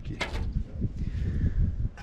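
Brief crinkle of a small plastic zip bag being handled near the start, over an irregular low rumble.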